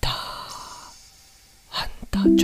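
A person's long, audible exhale, a sigh starting suddenly and fading over about a second and a half, followed by a short intake of breath near the end.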